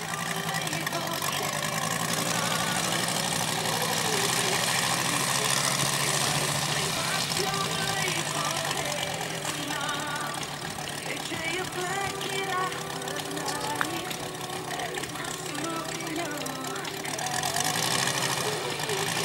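Engine of a radio-controlled model F4U Corsair running at idle: a steady low hum, with voices and music behind it.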